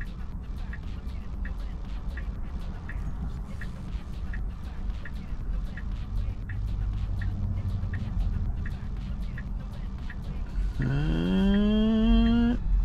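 Tesla Model 3 turn-signal indicator ticking steadily, about one and a half ticks a second, over a low, steady cabin rumble while the car waits to turn left. Near the end a drawn-out voice rises in pitch and holds.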